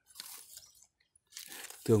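Soft rustling and crunching of pomelo leaves and dry leaf litter in two short spells, with a quiet gap between them.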